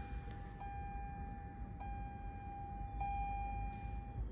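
Toyota RAV4 Hybrid's in-cabin electronic warning chime: a steady beeping tone pulsing about every 1.2 seconds, over a faint low cabin hum.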